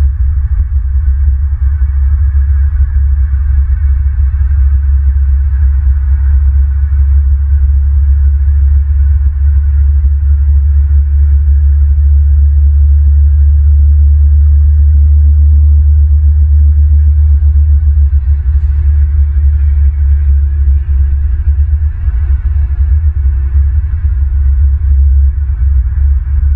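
Wind buffeting an outdoor camera microphone: a loud, steady low rumble that swells a little midway.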